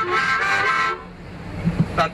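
Harmonica playing chords, stopping about a second in. Quieter road noise follows, with a couple of low thumps near the end.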